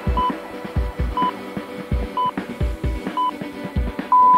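Interval timer countdown beeps: four short high beeps one second apart, counting down the last seconds of a work interval. Background electronic music with a steady beat plays underneath.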